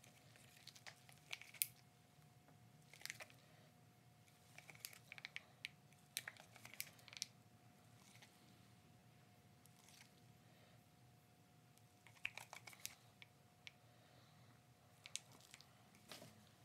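Faint, scattered crinkles and clicks of black disposable-gloved hands handling a small plastic squeeze bottle of resin, in short clusters with a quieter stretch past the middle. A faint steady hum runs underneath.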